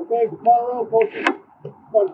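A man talking, with one short sharp hiss about a second in.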